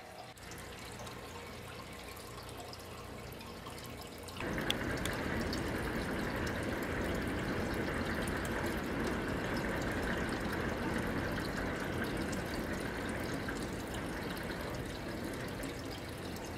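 Steady trickling, running-water noise, stepping up in loudness about four seconds in and then holding steady.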